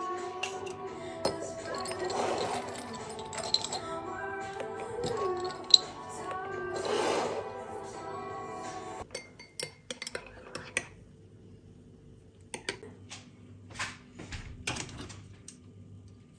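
Background music with a melody for about the first nine seconds, then it stops. Scattered light clinks and taps of dishes and utensils being handled follow.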